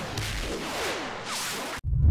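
Cartoon action sound effects: a run of whooshing swishes that fall in pitch. Near the end they cut off abruptly, and a deep explosion rumble begins.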